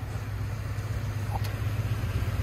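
An engine idling with a steady low hum.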